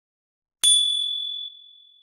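A single bright bell 'ding' from a subscribe-animation sound effect, struck once about half a second in. It rings with a clear high tone that fades away over about a second and a half.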